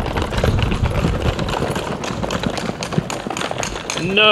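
Wheels of rolling suitcases rattling over patterned stone paving in a continuous rough rumble.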